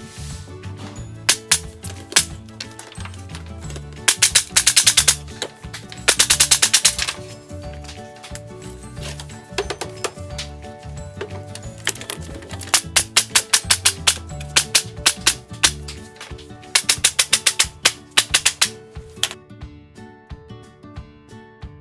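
Cordless impact driver hammering screws into the wooden bench-top boards in several bursts of about a second each, a rapid clatter of impacts, over background music with a steady beat.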